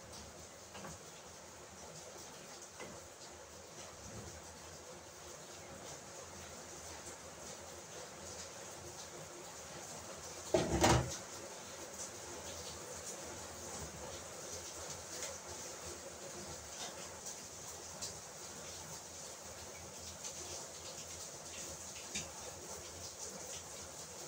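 Cookware being handled in a small kitchen: faint small clicks and clinks of pots and glass lids throughout, with one louder clatter about halfway through.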